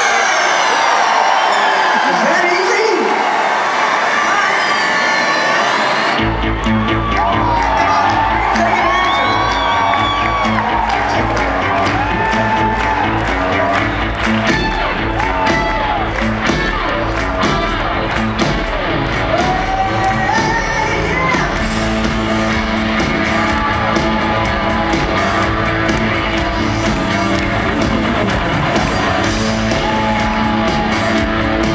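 Live rock band starting a song: falling keyboard sweeps with no bass for about six seconds, then the full band with bass and drums comes in suddenly and plays on, with crowd cheering over it.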